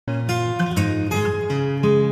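Background music led by a plucked acoustic guitar, with a new note or chord every quarter to half second.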